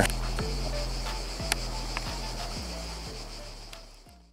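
Background electronic music with a steady beat of deep, falling-pitch drum strokes about twice a second, fading out steadily to near silence.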